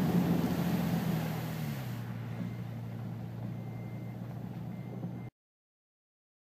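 Cabin sound of a Toyota FJ Cruiser's engine running as it drives through deep floodwater on the road. A hiss over the steady engine hum fades and the engine note steps down about two seconds in. The sound cuts off abruptly near the end.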